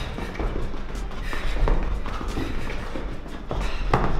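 Quick footsteps and shoe taps on a rubber gym floor as two people step rapidly around aerobic step platforms, with a few sharper thuds. Background music plays underneath.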